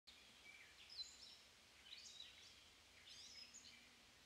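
Faint birdsong: a few short phrases of high chirps and whistles, heard over quiet outdoor background.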